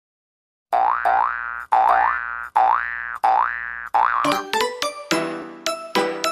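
Cartoon-style intro jingle: after a brief silence, four springy boing notes, each sliding up in pitch, then from about four seconds a quick run of bright chime-like notes.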